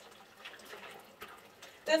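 Faint, steady trickle of hot-spring water running from a spout into a bathtub, with a few faint drips.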